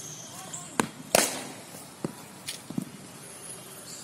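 Cricket ball and bat knocks during net practice: two sharp cracks close together about a second in, the second the loudest, then a few fainter knocks.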